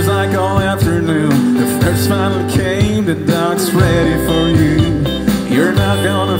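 Country band playing live: guitar lines over a steady bass and drum beat.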